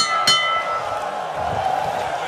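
Boxing ring bell struck in quick repeated strokes, the last two at the start, ringing briefly and dying away within the first second: the bell ending the round. Arena crowd noise carries on underneath.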